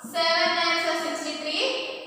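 A woman's voice reciting the nine times table in a sing-song chant.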